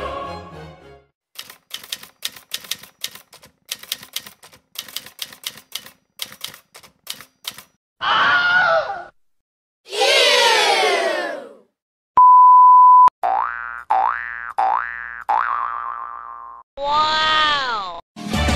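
A run of short meme sound-effect clips, one after another. First comes a quick irregular string of sharp clicks. Then a brief falling voice sound, a long falling "eeeww", a steady one-second beep, three quick rising boing-like sweeps, and a falling "wow" at the end.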